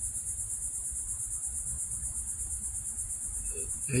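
Insects, crickets by the sound of it, singing in a steady high-pitched chorus that pulses rapidly, over a low steady rumble.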